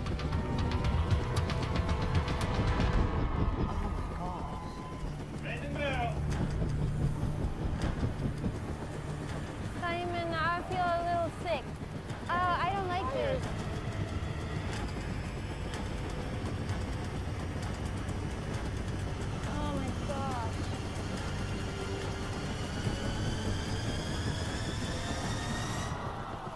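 Television show audio: a steady low engine-like rumble under music, with a few short shouted voices around the middle and a rising whine building near the end.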